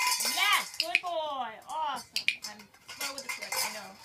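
Stainless steel dog bowls clanking and rattling on the floor as a dog noses an object into them, starting with a sharp clank and going on in irregular knocks and scrapes.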